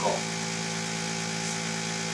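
Suction pump of an IVF egg-retrieval setup running with a steady electric hum, applying the gentle suction that draws follicular fluid through the aspirating needle into a collection tube.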